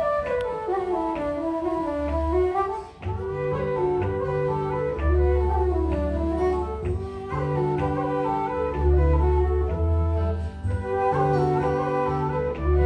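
Irish traditional dance tune played live on wooden flute, a quick running melody with ornamented notes. Low bass accompaniment comes in about three seconds in under the melody.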